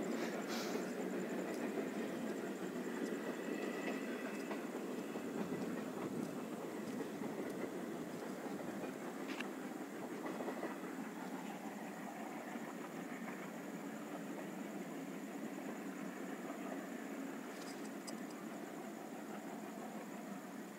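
Express passenger train running on the rails, heard from on board: a steady rumble and hiss of wheels on track with a few faint clicks, slowly getting quieter.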